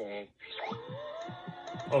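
Edited cartoon audio playing from a laptop speaker: a held, wavering pitched note with a fast stuttering pulse under it, a mix of voice and music.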